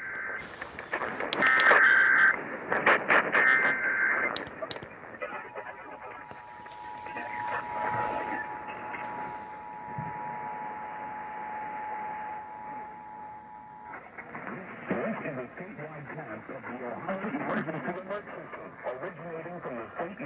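Emergency Alert System broadcast heard through a portable AM radio's speaker: the harsh buzzing data bursts of the SAME header, sent three times, open the Required Monthly Test alert. About five seconds in the two-tone EAS attention signal comes on and holds steady for about eight and a half seconds, then stops suddenly and an announcer's voice begins reading the statewide test message.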